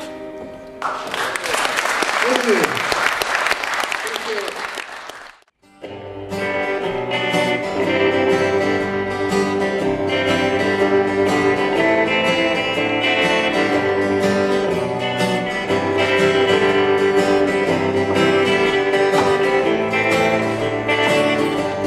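A guitar chord rings out and fades, then an audience applauds for about four seconds. After a brief gap, an acoustic guitar and an electric guitar start playing an instrumental intro together with a steady beat.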